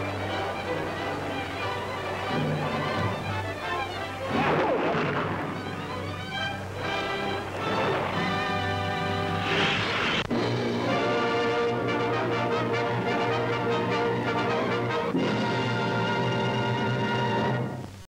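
Newsreel background music with held chords, changing about ten seconds in and stopping abruptly at the very end.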